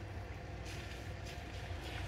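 A car driving slowly on a wet street: a steady low engine hum with tyre hiss.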